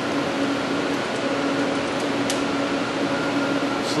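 Steady mechanical hum with constant low tones, with a few faint small clicks a little after two seconds in as the mounting screws of a green laser assembly are tightened by hand.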